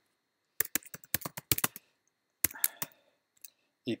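Keystrokes on a computer keyboard: a quick run of key taps about half a second in, a second short run around two and a half seconds, and a lone faint tap near the end.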